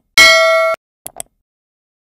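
Notification-bell sound effect: a single bright ding lasting about half a second that cuts off suddenly, followed just after a second in by two short clicks.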